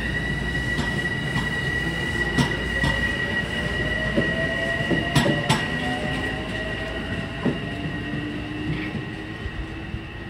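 Metro-North electric commuter train moving past the platform, giving a high steady whine with a second tone above it and a lower tone that climbs slowly midway. Sharp clacks of wheels over rail joints stand out around two and a half and five seconds in.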